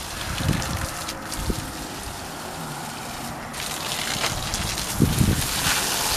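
Water from a garden hose gushing and splashing onto the soil of a potted conifer, steady throughout, with a few low bumps.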